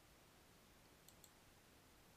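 Near silence with a faint computer mouse click: two quick ticks close together about a second in.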